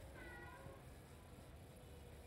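Near silence: faint background noise, with one brief faint pitched animal call during the first half-second.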